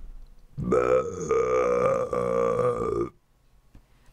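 A long, drawn-out belching cough in a person's voice, one steady pitched sound held for about two and a half seconds, starting just over half a second in.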